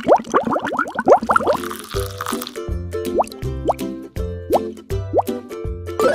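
Outro jingle with cartoon bubble-popping sound effects: a quick run of rising plops in the first second and a half, then a short tune over a steady bass beat with a few more rising plops.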